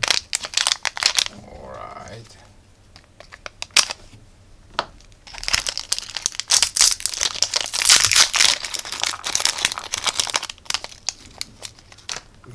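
Small clear plastic zip bags crinkling and rustling as they are handled and pulled open, in two bouts of crackly rustling with small clicks: a short one at the start and a longer, louder one through the middle.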